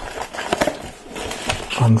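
Glued flap of a small cardboard box being pulled open, the glue seal breaking: scraping and crackling of card with a few sharp ticks, then rustling as the box is unfolded. Speech comes in near the end.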